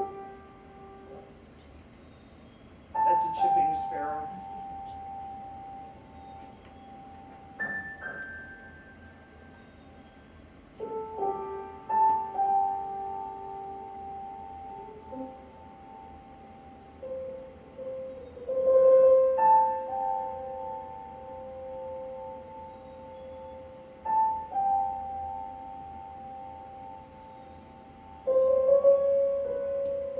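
Piano improvisation of slow, spaced-out notes and chords, each struck and left to ring, answering faint chickadee calls in the background. It is an unprocessed, hissy home-studio recording played back over a lecture hall's sound system.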